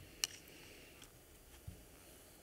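Paintbrush rinsed in a plastic water cup, with one sharp tap of the brush against the cup about a quarter second in, a faint tick about a second in, and a soft low thump near the end.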